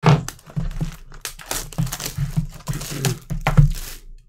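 A cardboard trading-card hobby box and its packaging being handled and moved on a table: irregular crinkles, scrapes and light knocks.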